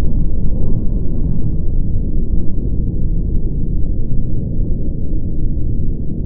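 Loud, deep, continuous rumble with nothing in the high end, the slowed-down sound of the explosive demolition of a power station.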